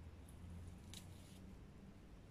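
Faint crunch of a European hedgehog chewing on a snail shell: one short, crisp crack about a second in, over a low steady hum.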